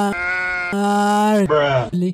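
A man laughing close to a microphone in long, drawn-out notes held on one steady pitch, some of them breathy, breaking into speech near the end.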